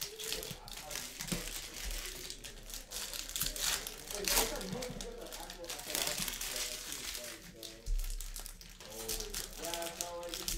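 Foil wrappers of Panini basketball card packs crinkling and crackling in the hands as packs are opened and the cards pulled out, in many quick irregular crackles.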